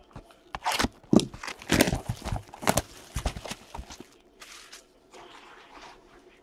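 A sealed cardboard trading-card hobby box in its plastic wrap being handled and slid on a table: a dense run of crinkles, scrapes and taps, easing to softer rustling about four seconds in.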